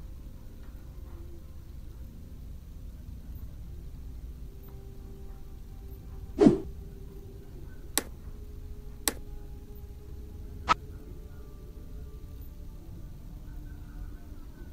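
A single heavy thump about halfway through, then three sharp knocks or taps over the next few seconds, over a low steady room rumble.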